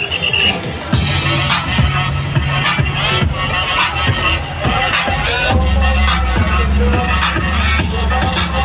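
Electronic dance music with a steady beat played loud through vehicle-mounted loudspeakers, with a heavy bass line coming in about halfway through.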